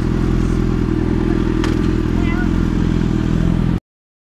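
Motorcycle engine idling steadily while stopped in traffic. It cuts off abruptly just before the end.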